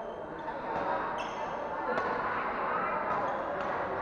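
Badminton rally: a racket strikes the shuttlecock once about halfway through, and court shoes squeak briefly on the floor, over a steady murmur of spectator chatter.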